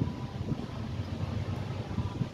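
Wind rumbling on a phone's microphone, low-pitched and uneven in level.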